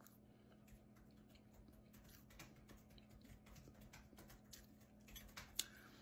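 Near silence: faint soft clicks of a person chewing food over a low steady hum, with a few slightly louder clicks near the end.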